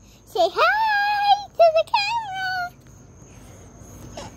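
A young girl's high-pitched, drawn-out squealing calls, several in the first two and a half seconds, with crickets chirping steadily in the background.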